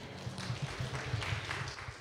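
Congregation applauding: a dense, irregular patter of hand claps that thins toward the end.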